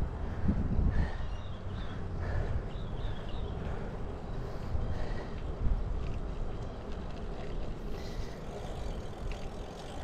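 Wind buffeting the action camera's microphone as a road bike rolls steadily along a paved street: a continuous, gusty rush, heaviest in the low end.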